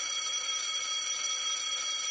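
Electronic sound effect of the Eye of Horus online slot game: a steady held tone of several high pitches at once, like an alarm chime.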